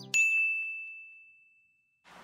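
A single bright ding, a bell-like chime struck once just as the music cuts off, ringing on one high note and fading away over about a second and a half.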